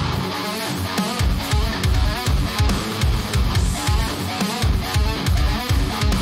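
Down-tuned metalcore instrumental playing back: electric guitars and bass chugging in a syncopated heavy groove, with a lead guitar line over it.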